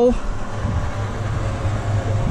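Small electric cement mixer running with a steady low hum, its tipped drum nearly emptied of mortar.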